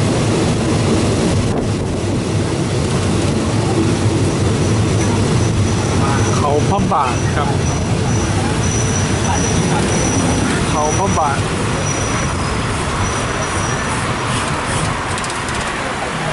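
Passenger train running on the rails, heard through an open carriage window: a steady low rumble with rushing air that eases toward the end as the train slows to a stop at a platform. A faint thin high squeal comes and goes through the middle.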